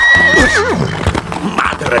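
A horse whinnying as the white stallion rears up: one long, high cry that breaks and falls in pitch within the first second, followed by hoofbeats as it gallops off.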